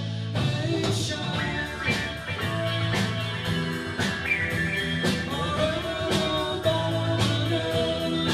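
Live rock band playing: electric guitars, bass guitar and drums, with regular drum hits under held guitar notes.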